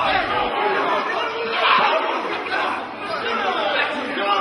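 Several men's voices talking and calling out over one another, a jumble of chatter with no clear words. A deep low background sound cuts out about half a second in.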